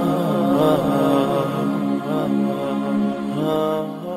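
Slow, chant-like vocal music: a sustained voice holding long notes, each about a second, stepping from pitch to pitch.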